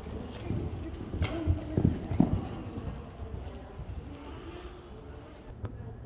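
Hoofbeats of a horse cantering on the sand footing of an indoor arena, dull thuds loudest about two seconds in and then fading away.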